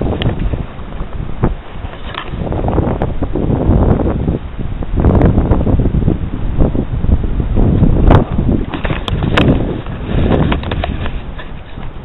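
Wind buffeting the camera microphone in uneven gusts, with a few sharp clicks near the end.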